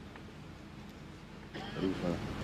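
Low steady hum and faint background noise of the outdoor gathering through the public-address microphone, with a brief murmur of a voice near the end.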